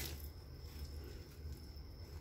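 Quiet background: a steady low hum with a faint, thin high whine above it.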